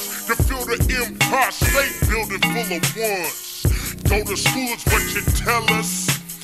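Chopped-and-screwed hip hop: slowed-down rapping over a slow, heavy bass-drum beat.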